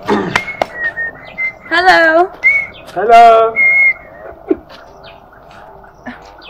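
Outdoor animal calls: clear whistled bird notes, with two loud quavering, wobbling cries about two and three seconds in. The last two seconds are quieter.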